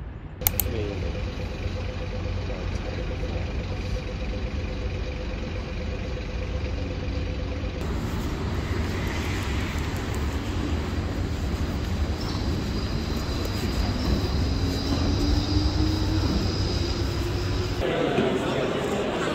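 Steady low rumble of city traffic, with a sharp click about half a second in. In the last few seconds a tone rises slowly, like an engine picking up speed.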